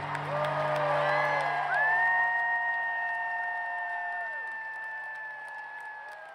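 A rock concert crowd in an arena cheering and screaming, many voices holding long high cries that trail off one after another. Underneath, the band holds a low sustained chord.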